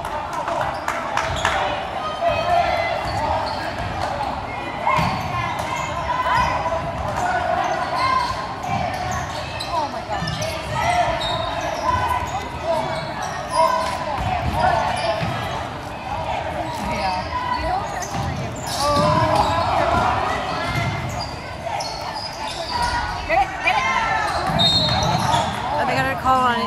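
Basketball bouncing on a hardwood gym floor during play, amid continuous spectator chatter and shouts in the gymnasium.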